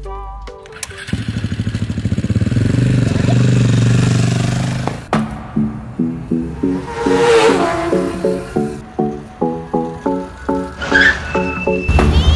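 A small engine buzzes with a fast pulse and revs up and back down for a few seconds, in the manner of a mini pocket bike's engine. Music with a steady, bouncy beat then takes over.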